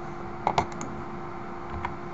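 Computer mouse clicks: a quick run of sharp clicks about half a second in and a single click near the end.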